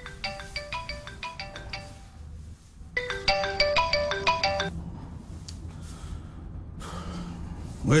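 Mobile phone ringing with a melodic ringtone: two short phrases of quick notes, about three seconds apart, until it is answered near the end.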